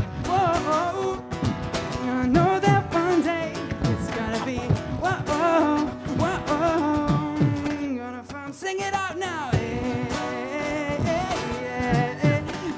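Strummed acoustic guitar with a sung melody, played live, with a brief lull about eight seconds in.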